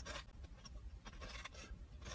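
Three short, faint scratchy rustles close to the microphone, near the start, about a second and a quarter in, and at the end.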